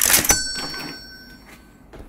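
A cash-register "cha-ching" sound: a sudden loud clash followed by bell-like ringing that dies away over about a second and a half.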